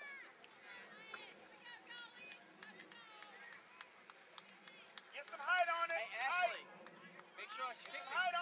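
Raised voices calling out across a soccer field: faint, distant calls throughout, then a few loud, high-pitched shouts about five to six and a half seconds in and again near the end. Scattered faint sharp clicks run underneath.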